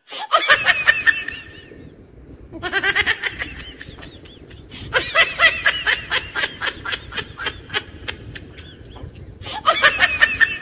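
A gull calling in laughing series of quick, arched, high notes. There are about four bursts, each of one to two seconds: near the start, around three seconds in, around five to seven seconds in, and again at the end.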